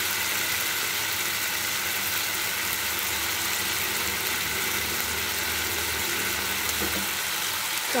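Potatoes, prawns, onions and green chillies sizzling steadily in hot oil in a kadai.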